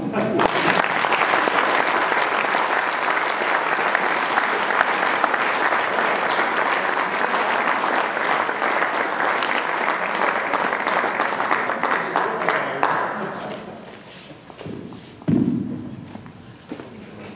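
Audience applauding in a hall: dense clapping that runs for about thirteen seconds and then dies away.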